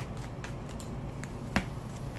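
A tarot deck being shuffled by hand: a run of light card clicks a few tenths of a second apart, with one sharper, louder snap about one and a half seconds in.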